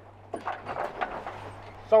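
Soft, indistinct voice sounds over a steady low drone from the catamaran's engine, ending in one spoken word.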